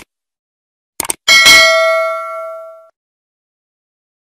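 Subscribe-button animation sound effect: quick mouse clicks, then a notification bell ding whose ringing tones fade out over about a second and a half.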